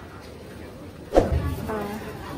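Low murmur of a busy market, broken about a second in by a sudden loud thump that drops away quickly, then a brief spoken syllable near the end.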